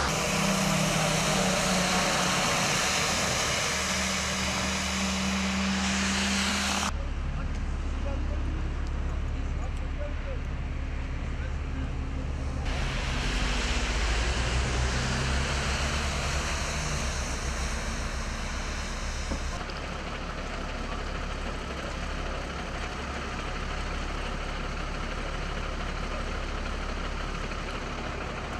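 Road traffic on a wet, snowy highway: lorries and cars passing with engines running and tyres on the wet road. The sound changes abruptly three times, as separate recordings are cut together.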